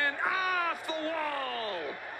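Baseball TV announcer's excited voice calling a deep fly ball. It ends in one long held word that falls in pitch.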